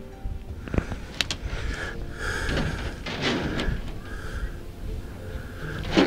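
Camera handling: a few sharp knocks and clicks about a second in, then scraping and rustling as the camera is moved.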